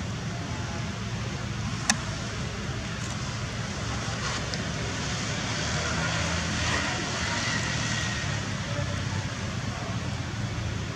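Steady outdoor background noise, a low rumble under a hiss, with one sharp click about two seconds in.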